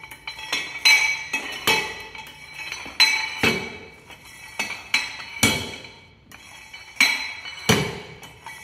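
A long steel rammer pounding oven-dried clay in a steel cylinder, about a dozen metallic clanks at an uneven pace, each ringing briefly. The clay is so hard that it is being broken down by force.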